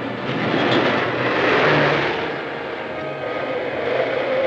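Vintage truck driving past at speed, its engine and road noise swelling to a peak about a second and a half in, then fading as it moves away.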